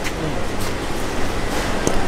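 Steady background hum and noise with faint voices, and a short click near the end.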